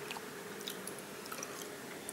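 Faint chewing, with a few small clicks.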